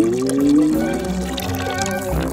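Liquid (milk) pouring and splashing onto an umbrella's fabric canopy, over background music, with a long sliding tone that drops and then slowly rises in the first second and a half.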